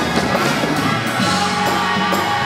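Live soul band with drum kit and guitar playing under a woman singing lead, with backing singers on stage.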